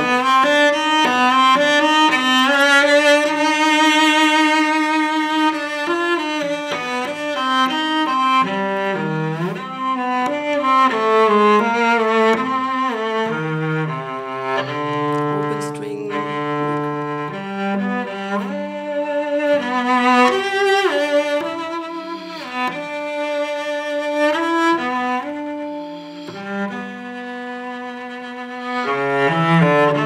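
Solo cello, a 1730 Carlo Tononi instrument, bowed in a slow melody of long sustained notes with vibrato, softer for a moment near the end.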